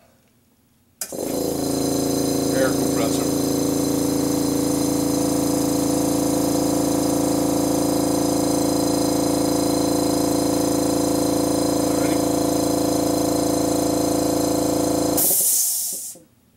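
Electric air compressor starts suddenly about a second in and runs steadily with a hum for about fourteen seconds, then cuts off with a short burst of hiss as air is released.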